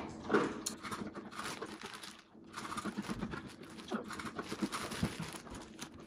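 A dog eating from its food, a faint run of irregular small crunches and clicks.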